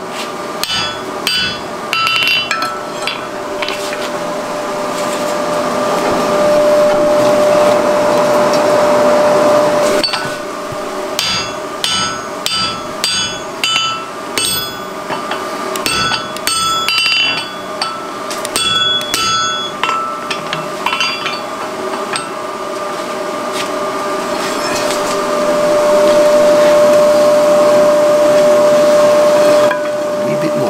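Hand hammer blows on red-hot mild steel on an anvil, in quick ringing clusters, forging the clefts for a double cleft forge weld. Between the two spells of hammering, a forge blower runs as a steady rush of air with a whine, growing louder.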